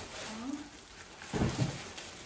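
Plastic packaging rustling and crinkling as a heavy plastic-wrapped stroller part is lifted out of a cardboard box, with a short low grunt of effort about one and a half seconds in.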